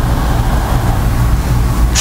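Steady, loud rushing noise with a low hum beneath it.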